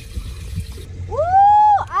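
A woman lets out one long excited "woo" about a second in, its pitch rising and then held, over a low steady rumble of water around the boat.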